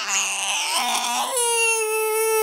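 A sick one-year-old baby crying: first a rough, noisy cry, then a long steady wail starting about two-thirds of the way in.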